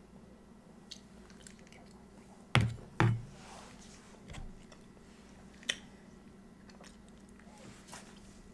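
Close-miked chewing of a mouthful of soft, cheesy chicken broccoli rice casserole, with small mouth clicks. Two loud thumps about half a second apart a little over two seconds in, and a sharp click near the sixth second.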